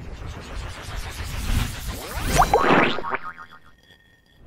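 Sound effects of an animated logo intro: a low rumbling whoosh, then a cluster of quick rising pitch glides with a burst of noise about two and a half seconds in, fading out shortly before the end.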